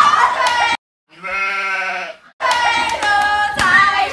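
High-pitched excited squeals and voices of teenage girls, broken abruptly by a short silence and about a second of an edited-in sound effect, a single held pitched cry. The squealing resumes after it.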